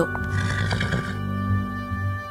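A horse neighing once, a short rough call within the first second, over steady background music.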